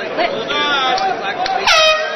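Crowd shouting, then a loud air horn blast about one and a half seconds in: the horn signalling the end of the round.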